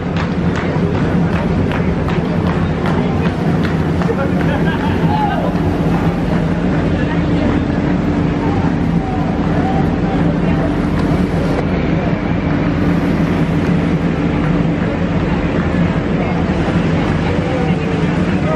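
Busy city street ambience: crowd chatter over a steady low hum of traffic.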